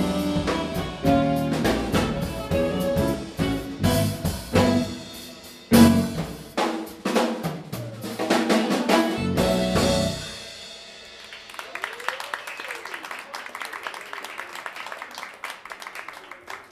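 Live jazz band of saxophone, keyboard, electric bass and drum kit playing the final bars of an instrumental piece, with busy drumming and a hard accent about six seconds in. The music stops about ten seconds in, giving way to fainter audience applause.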